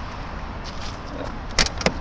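Steady background hiss, then two or three sharp clicks near the end as the Lada Niva's driver-door handle is pulled and the latch releases.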